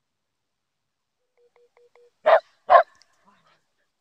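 A dog barks twice, two short loud barks about half a second apart.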